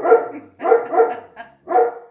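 A dog barking several times in quick succession, about four short barks.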